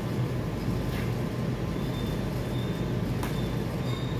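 Steady low mechanical rumble, with a few faint short high tones and two light clicks over it.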